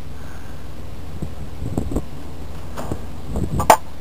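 Hand-held pump oil can squirting oil around the filter bases of a remote oil filter kit: a few faint clicks and handling knocks over a steady low background noise, with one sharper click near the end.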